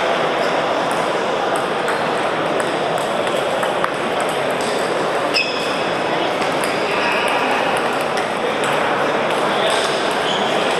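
Table tennis balls clicking off bats and tables, scattered irregular pocks over a steady murmur of many voices in a large hall.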